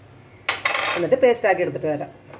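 A sudden clatter of steel kitchenware about half a second in, followed by a few seconds of a person's voice.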